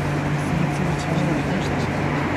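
Indistinct conversation between people outdoors over a steady low hum.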